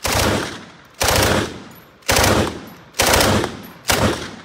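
FG42 rifle (7.92×57mm Mauser) fired as five single shots spaced about a second apart, each loud report trailing off in a long echoing decay.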